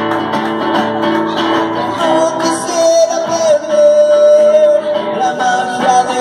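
A man singing, holding one long note through the middle, over his own acoustic guitar playing.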